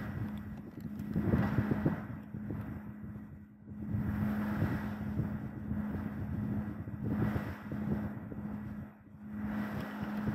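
A rumbling background noise that swells and fades in several waves, over a steady low hum.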